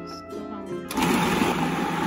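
Food processor motor starting about a second in and running steadily, blending boiled potato and cooked chicken, over light plucked-string background music.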